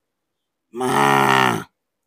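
A man's voice giving one drawn-out, grunting, buffalo-like bellow about a second long, starting about halfway in, in imitation of a male buffalo.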